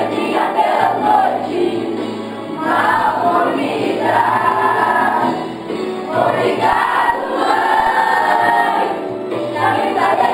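A group of children singing together as a choir, in sung phrases of a few seconds with held notes and short breaks between phrases.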